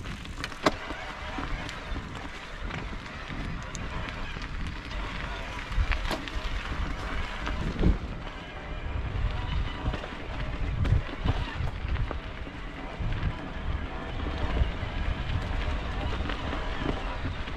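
Mountain bike riding fast down a dirt forest trail: knobby tyres rolling over stones and roots, with rattles and a few sharp knocks from the bike, and wind on the microphone.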